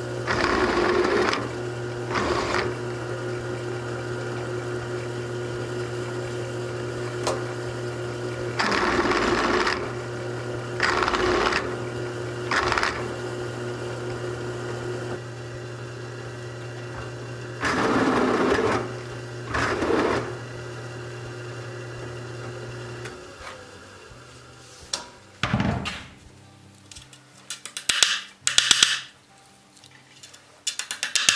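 A bench drill press motor runs with a steady hum while its bit drills through a buggy wheel's steel tire in several short bursts of cutting noise. The motor shuts off a little past two-thirds of the way through, followed by a few scattered clicks and knocks.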